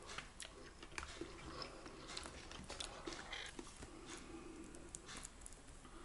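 Faint chewing of a mouthful of soft pie filling, with small scattered clicks.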